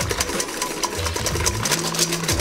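Balloon whisk beating egg whites in a stainless steel bowl: a rapid, steady run of ticks as the wires strike and scrape the metal. The whites are frothy, being whipped toward stiff peaks.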